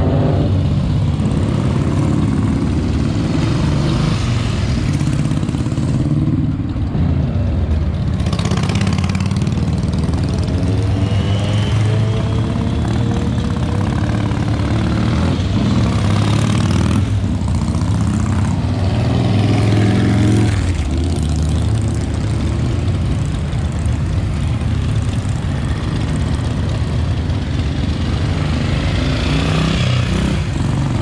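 Motorcycles, several of them classic bikes, riding past one after another, each engine note rising and falling as it goes by, over a steady low engine hum.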